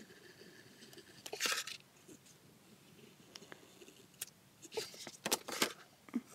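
Paper handling at a craft table: a Sharpie marker stroking along the edge of a cardstock page, and the page scraping and rustling as it is turned on the mat, in a few short scratchy bursts with a cluster of light ticks near the end.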